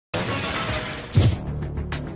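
A show-opening sound effect: a burst of bright hissing noise with a heavy low hit about a second in, which is the loudest moment, then music with a steady beat.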